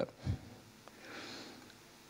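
A pause in a man's talk, with a brief low vocal sound near the start, then a soft sniff or breath through the nose close to a handheld microphone about a second in.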